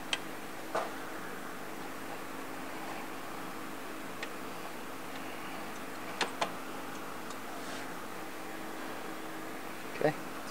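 A few light clicks and taps of a fin-and-tube transmission cooler being handled and positioned against the front grille, including a quick double tap about six seconds in, over a steady background hum.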